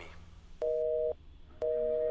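Telephone busy tone after a call: two steady two-note beeps, each about half a second long, about a second apart.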